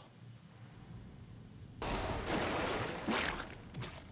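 Quiet at first, then about two seconds in a sudden, loud burst of noise that carries on: a sound effect from the anime soundtrack.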